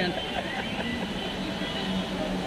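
Nearby people talking in snatches over a steady outdoor rumble of traffic and crowd.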